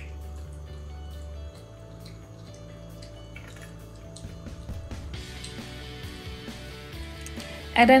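Background music playing steadily, with faint drips of olive oil poured from a glass bottle into a non-stick frying pan.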